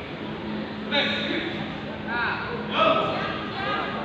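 Voices shouting and calling in a large hall, with several separate calls and the loudest one about three seconds in.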